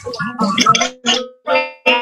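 Plucked guitar music mixed with voices, coming in short phrases with brief breaks between them.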